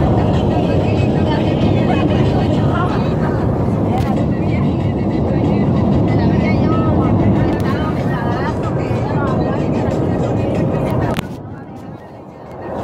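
Steady road noise inside a moving car's cabin, with indistinct, muffled voices faintly beneath it. The noise drops suddenly about a second before the end.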